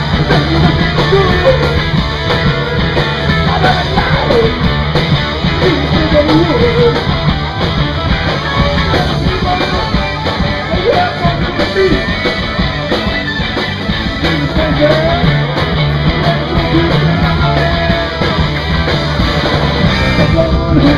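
Live rock band playing loud, driving rock: distorted electric guitar, bass and drums, continuous throughout.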